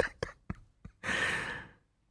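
A man's breathy laughter trailing off: a few short gasping breaths, then one long exhaled sigh about a second in.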